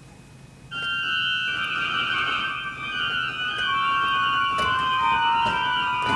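Pipe organ playing contemporary music: a dense, high cluster chord enters sharply about a second in and is held, while some of its notes step slowly downward.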